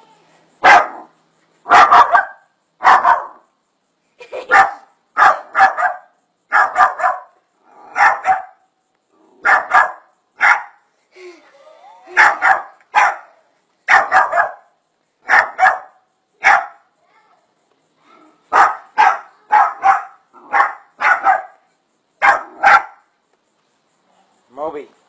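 A small dog barking repeatedly and insistently at a black snake close in front of it, about one or two loud barks a second, with a short pause about two-thirds of the way through.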